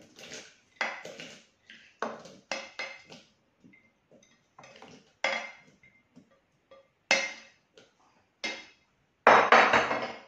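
Chopped cooked squid being scraped out of a bowl into the Thermomix's steel jug: a series of short clinks and scrapes about once a second, with a louder clatter near the end.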